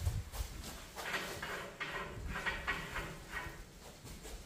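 Gasoline glugging out of a plastic gas can as it is poured into a race car's homemade fuel tank, in a quick run of gulps about three a second.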